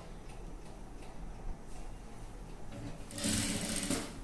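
Electric sewing machine stitching purple piping onto a dress neckline: a low hum, then a short burst of fast stitching about three seconds in, lasting roughly a second.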